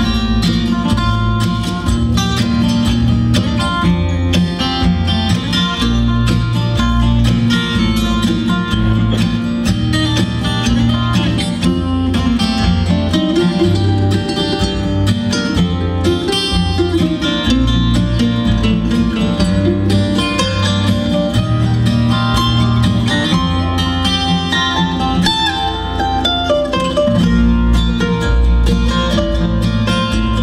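Bluegrass band playing an instrumental break between verses: mandolin, two acoustic guitars and upright bass, with no singing.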